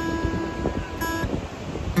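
Takamine acoustic guitar strummed twice, about a second apart, on an F major seven chord and left to ring. The chord is the F shape on the D, G and B strings with the high E string ringing open.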